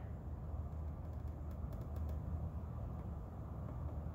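Steady low background hum and rumble, with a few faint ticks between one and two seconds in.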